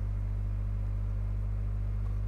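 A steady low hum with no other sound: the background drone of the recording.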